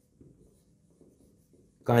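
Faint strokes of a marker writing on a whiteboard, with a man's voice starting just before the end.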